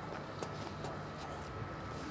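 Quiet steady background hiss with a couple of faint soft clicks as a man chews a mouthful of burger with crispy chicken.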